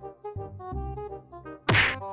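Light background music with steady notes, then one loud, sudden hit sound effect near the end.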